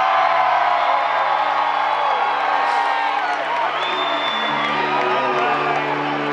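Live band holding sustained low chords, changing to a new chord about four seconds in, while a concert crowd cheers and whoops over it.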